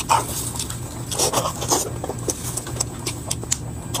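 Noisy close-miked eating: a run of short wet clicks from chewing and lip smacking, with brief grunt-like mouth sounds near the start and about a second in.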